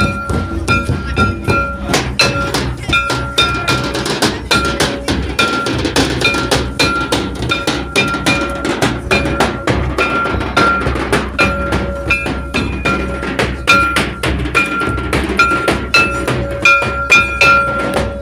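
Drum-led folk music: rapid, dense hand-drum strokes with a high ringing note that repeats on and off over them.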